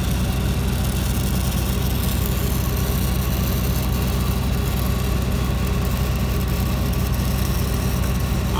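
Engine-driven welding machine running at a steady hum, with the even crackling hiss of a stick-welding arc being run on the pipe joint.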